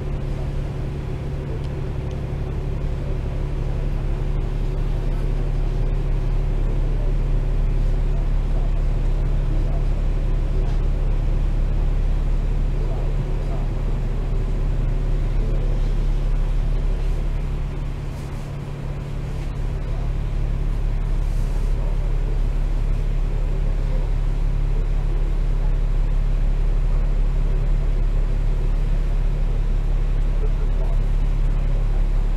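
New World First Bus 6133's engine idling in stopped traffic, a steady low drone that dips briefly about two-thirds of the way through and then returns.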